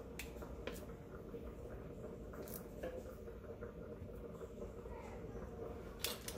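Faint kitchen handling sounds: a few light clicks and soft rustles as a block of vegetable shortening is handled at the counter, over a steady low hum.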